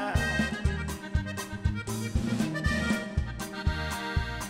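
Norteño band playing an instrumental break between sung lines. A button accordion carries the melody over electric bass, acoustic guitar and drum kit, with a steady beat of bass notes.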